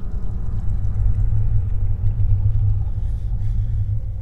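A deep, steady low rumble, a menacing drone in the film's soundtrack, held loud and unchanging.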